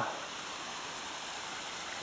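Steady, even rushing of a stream, with no distinct events.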